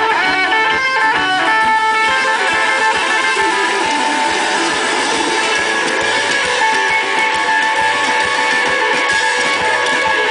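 Rockabilly band playing live, with no singing: an electric guitar plays a lead line over drums and bass at a steady beat.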